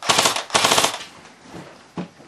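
Airsoft rifle firing two short full-auto bursts in quick succession, each about half a second long with a rapid stream of shots, followed by a single short knock near the end.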